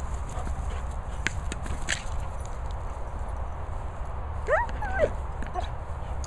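A dog's short, high whines, two rising-and-falling calls about four and a half seconds in, over a steady wind rumble on the microphone, with a couple of sharp knocks in the first two seconds.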